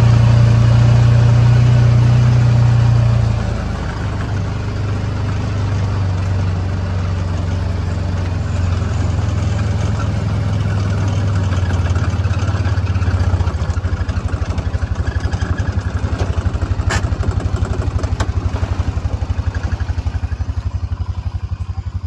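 Side-by-side utility vehicle's engine running at a low, steady speed. It is loudest for the first three seconds or so, then settles to a slightly quieter, even hum. There is one sharp click about three-quarters of the way through.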